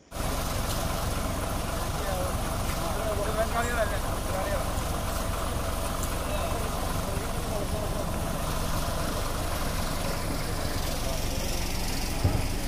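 Bus engine idling steadily, with people talking faintly around it.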